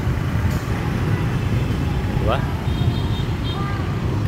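Busy city-street traffic of motor scooters and cars moving through an intersection: a steady low rumble.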